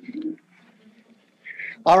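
A man's faint low hum or murmur in a pause, then he starts speaking near the end.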